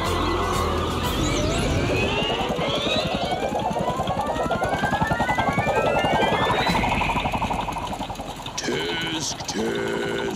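Cartoon soundtrack music with a stepped tone climbing steadily in pitch for several seconds, then two short vocal exclamations near the end.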